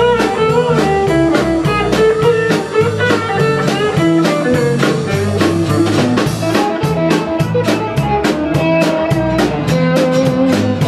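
Live country band playing an instrumental break: a lead electric guitar carries the melody over bass, rhythm guitar and drums keeping a steady beat.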